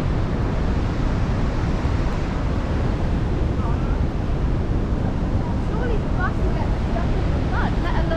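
Steady rushing noise of wind buffeting the microphone, with faint distant voices.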